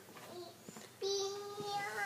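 A young girl's voice singing one long, steady note, starting about a second in after a nearly quiet first second.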